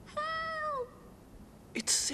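A cartoon character's high, cat-like squeal, one held note of under a second that drops in pitch at its end. Near the end, a short breathy vocal sound begins.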